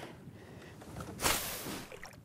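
A short rush of water, about a second in and lasting about half a second, as a large northern pike is lowered over the side of a boat back into the lake to be released.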